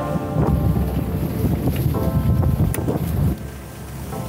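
Wind buffeting the microphone and water rushing past a sailing trimaran under way, over faint background music. The wind rumble drops away about three seconds in.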